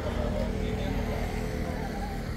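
Voices of people chatting in the background over a steady low rumble.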